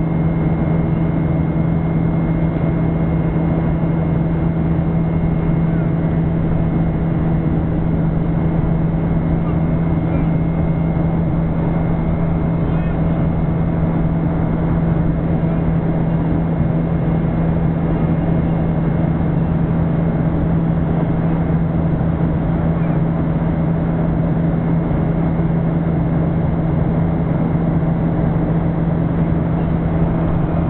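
Steady cabin noise inside a Boeing 737-800 in climb: the CFM56 turbofans give a constant low drone with a strong steady hum and a thin high whine over a rush of airflow.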